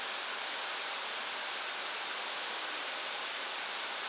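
Steady, even rushing hiss of a Boeing 747SP's flight deck in cruise flight: the constant noise of air and engines heard inside the cockpit.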